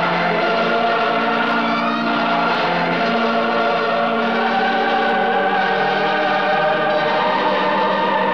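End-title film music: a choir singing long, held chords that shift a few times.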